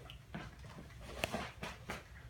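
A few footsteps and short sharp taps on a tiled floor.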